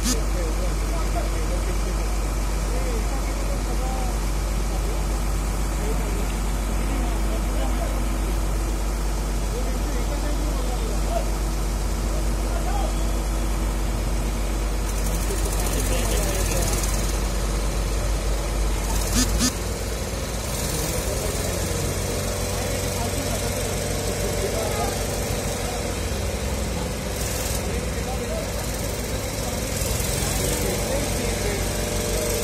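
Diesel engine of a Demag mobile crane running steadily under load while it holds and lowers a metro car. A little over halfway there is a brief knock, and right after it the engine's low drone shifts to a different, more uneven note.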